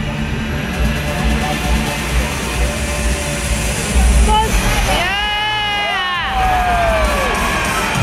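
Show music playing loudly over arena crowd noise, with one long high whoop from a person about five seconds in that rises, holds and falls away over about two seconds.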